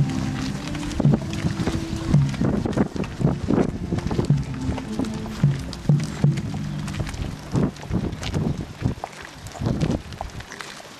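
Music from a procession band, held low notes, mixed with many close footsteps of people walking on a cinder path. The music thins out near the end while the footsteps go on.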